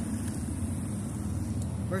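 Road traffic on a multi-lane street: a steady low rumble of cars.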